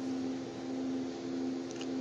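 Steady low machine hum with a faint even hiss.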